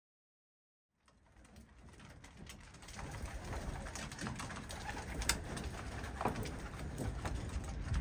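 Silent at first, then fading in about a second in: racing pigeons feeding at a wooden feeder trough, many sharp clicks of beaks pecking, with low pigeon cooing.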